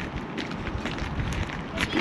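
Wind rumbling irregularly on the microphone outdoors, with a low, even background hiss and a few faint ticks.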